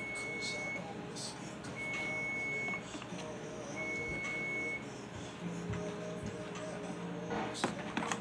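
Three long, steady electronic beeps, about a second each and two seconds apart, over background music. A sharp knock near the end.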